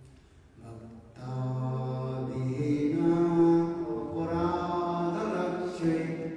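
A man's voice chanting a mantra in long, held notes, starting about a second in after a short pause.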